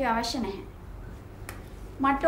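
A voice trailing off in the first half second, then quiet room tone broken by one sharp click about one and a half seconds in.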